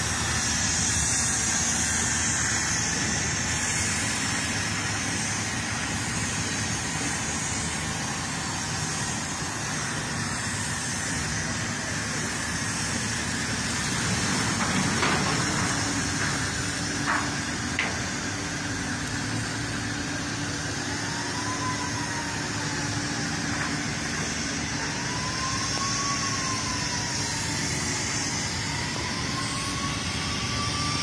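Hydraulic truck tipper tilting a loaded sugarcane truck on end to dump its cane, over the steady noise of sugar mill machinery. A few knocks come about halfway through, and a whine rises and falls several times in the second half.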